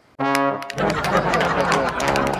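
A TV programme's theme jingle on brass: a single held note sounds, then the full tune comes in about three-quarters of a second later.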